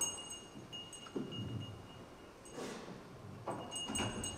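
Quiet stage sounds: a few soft knocks and footfalls on a theatre stage as a performer walks off, over a faint thin high-pitched steady tone.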